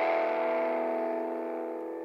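The song's last chord, a held electric guitar chord on the rock backing track, ringing out and fading steadily as the song ends.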